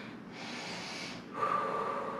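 A woman breathing hard through an exercise hold: a rush of breath for about a second, then a breath through the nose with a thin, steady whistling tone.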